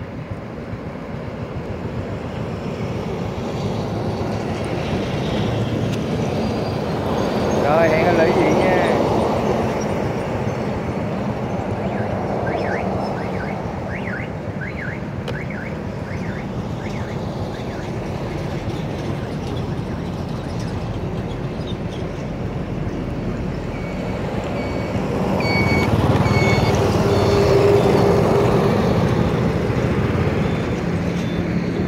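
Steady road noise of a vehicle moving along a highway: engine, tyres and rushing air. It swells louder about 8 seconds in and again near the end, as traffic passes, and a few short high beeps sound near the end.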